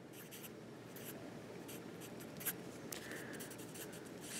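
Pencil writing on paper: faint, irregular scratching strokes as a word is written out by hand, with a slightly louder tick about two and a half seconds in.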